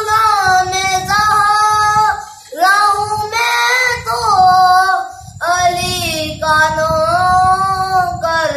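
A boy singing a naat solo with no accompaniment, in long held, wavering notes across three phrases with short breaths between them.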